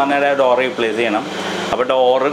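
A man talking continuously, with a steady hiss in the background.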